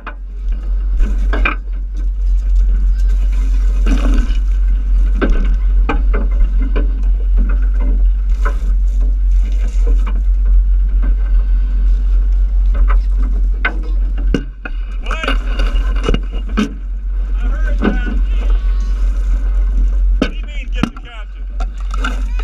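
Steady low rumble of a boat under way on open water, with people's voices and shouts over it.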